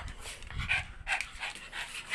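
A dog panting excitedly, a few quick breaths a second.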